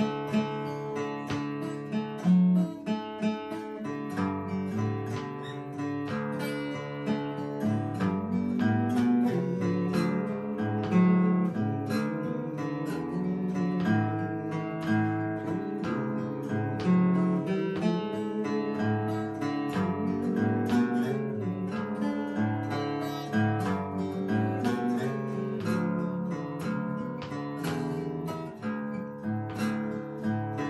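Solo acoustic guitar playing an instrumental break between verses of a traditional folk song, many notes picked in quick succession over a changing bass line.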